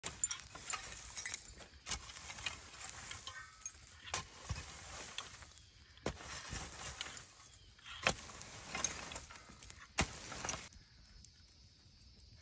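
Metal garden rake scraping through ash and charred wood, raking over the coals of a burned-out fire, with a sharp knock of the tines striking the debris about every two seconds. The raking stops near the end.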